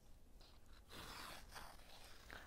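Faint rustle of yarn being pulled through a punched sheet of paper during hand-sewing, about a second in, in otherwise near silence.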